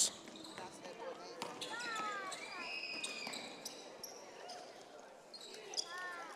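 Basketball dribbling on a hardwood gym floor, heard fairly faintly as a few scattered bounces, with faint voices in the gym.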